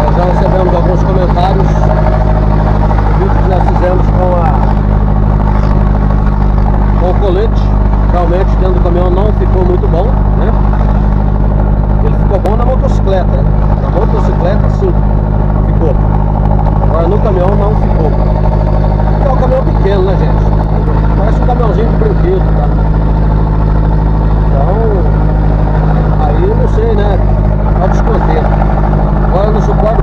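A vehicle's engine running steadily under way, heard from inside the cab as a constant low drone, with a voice faintly heard over it at times.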